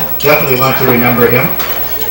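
A man's voice, low-pitched, over clinking of dishes and cutlery in a busy room.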